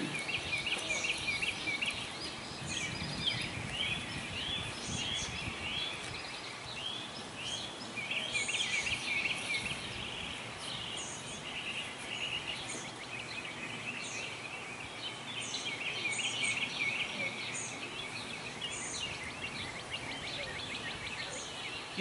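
Open-air background noise with a bird calling over it in runs of short, quickly repeated chirps, which thin out about halfway through and then pick up again.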